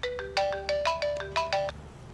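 Mobile phone ringtone: a quick melody of short electronic notes that stops near the end.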